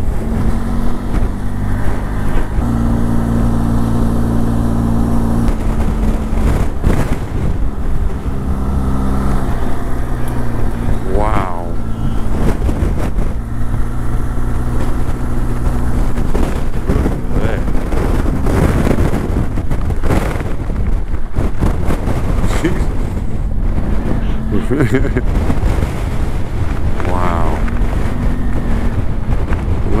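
Motorcycle engine running at a steady road speed with wind noise on the microphone, the engine note shifting a few times as the rider changes speed.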